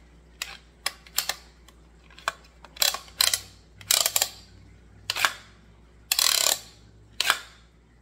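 Plastic clicks and short sliding rasps as the grow light's notched plastic pole is slid in and out through its height settings. There are about a dozen separate clicks, with one longer scraping slide about six seconds in.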